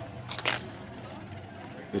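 Steady outdoor background noise with a low hum, broken by a brief sharp click-like noise about half a second in.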